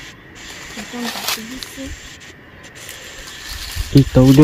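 Faint, quiet voices in short snatches over a steady background hiss, with one brief noise about a second in; a woman starts talking loudly right at the end.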